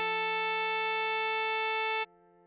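Playback-generated tenor saxophone holding one long, perfectly steady note (written B5) over a sustained F major chord. The sax note cuts off suddenly at the very end.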